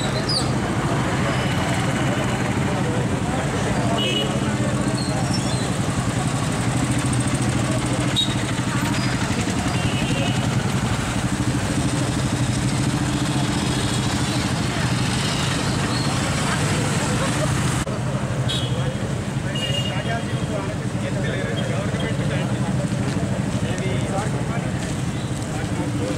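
Motorcycle engines running at low speed with a steady low hum, mixed with crowd voices and street noise.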